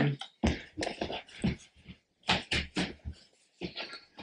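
Paper cards and a cardboard watch box being handled: an irregular run of short taps, clicks and rustles with brief pauses between them.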